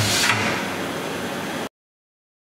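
Haas VF2 vertical machining center during a tool change: a short burst of hiss with low clunks as the umbrella tool changer's carousel meets the spindle, over the machine's steady running noise. The sound cuts off abruptly shortly before the end.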